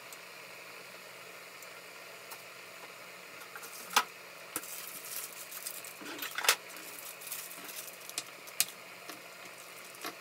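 Chicken adobo simmering in its own juices in a glass-lidded skillet: a steady bubbling hiss with scattered sharp pops and crackles, the loudest about four seconds in and again about six and a half seconds in.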